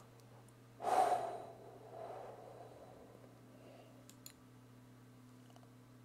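A man's heavy exhale into a close desk microphone about a second in, fading into faint breathing, with a couple of soft clicks a few seconds later.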